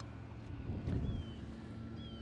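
Quiet outdoor ambience with light wind rumbling on the microphone, and two faint, short falling whistles, one about a second in and one at the end.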